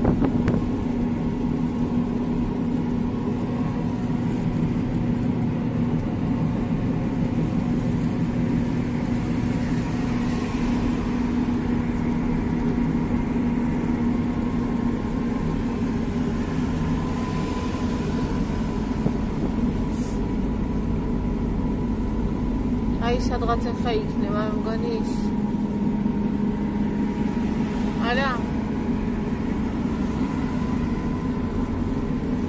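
A car running steadily at road speed, heard inside the cabin: engine hum and road noise throughout. Short wavering voice sounds come in about three-quarters of the way through and again near the end.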